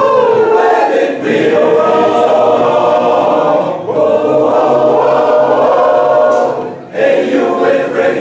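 Large men's choir singing a cappella in full, sustained chords. The phrases break off briefly about a second in, again near four seconds, and dip near the end.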